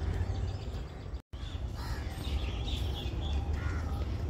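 Birds calling in the open, over a steady low rumble; the sound drops out for an instant a little over a second in.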